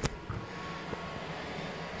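Quiet steady background noise with a faint hum, a sharp click right at the start and a couple of faint ticks after it.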